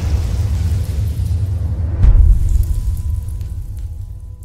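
Trailer score and sound design: a deep, sustained low rumble with one heavy boom about two seconds in, then fading away. Faint steady high tones come in near the end.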